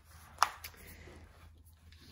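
A pink cash binder's snap strap being unsnapped: one sharp click about half a second in, a softer click just after, then faint handling rustle as the binder is opened.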